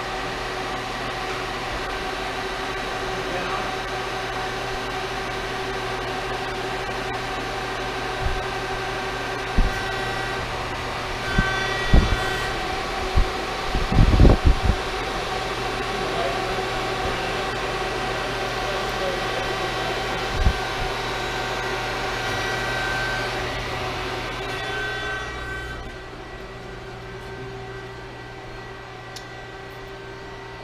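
Hydraulic press brake running, a steady hum with a few held whining tones from its hydraulic pump. Several sharp clunks and knocks come in a cluster near the middle, with one more a little later. The hum drops lower near the end.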